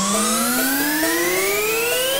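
A synthesizer riser in an electronic music track: one tone with several overtones gliding steadily upward in pitch.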